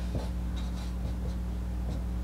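Marker writing on a whiteboard: faint short scratchy strokes as symbols are drawn, over a steady low electrical hum.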